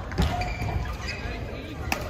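Badminton play on a court mat: a thump about a quarter second in, short high squeaks of shoes on the court surface, and a sharp crack of a racket hitting a shuttlecock near the end, over chatter in the background.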